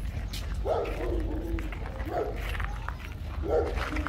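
A dog barking three times, about a second and a half apart.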